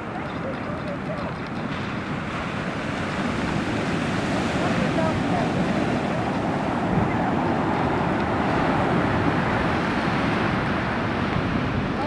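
Surf breaking on the beach, a steady rush of noise that swells a little louder a few seconds in, with wind buffeting the microphone.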